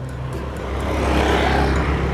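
A road vehicle passing by: its rushing noise rises smoothly to a peak about one and a half seconds in, then begins to ease.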